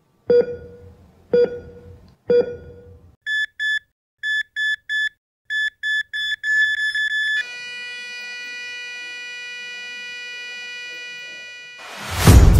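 Patient monitor beeping about once a second, then faster, higher-pitched alarm beeps in short groups, then one long steady flatline tone from about seven seconds in that fades near the end: the sound of a heart monitor going to flatline.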